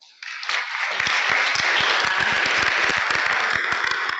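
Audience applauding in a hall. The applause starts just after a talk ends, builds over the first second, holds steady and dies away near the end.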